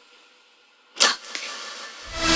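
A pen scratching across plastic PVC pipe while marking a line: quiet at first, then a sharp stroke about a second in, a smaller one just after, and a steady scratchy hiss.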